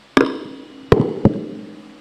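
Handheld microphone handled and set down on a pulpit: three sharp knocks picked up through the microphone itself, the last two close together, each with a short ringing tail.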